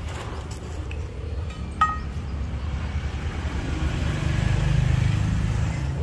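A low background rumble that swells louder about four seconds in, with a single short clink about two seconds in.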